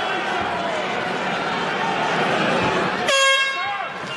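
Arena crowd noise, then about three seconds in a loud horn sounds for just under a second, signalling the end of the fight's final round.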